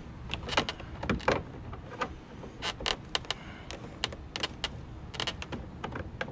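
Hand-held bolt driver loosening a coarse-threaded mounting bolt of a Mazda RX-8 door mirror, with a run of irregular clicks and taps as the tool and bolt turn in the door frame.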